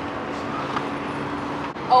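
A car engine idling with a steady low hum under open-air background noise.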